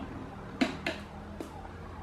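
Three light, sharp clicks of a screwdriver and hands handling the plastic blade hub of a desk fan, over a faint steady low hum.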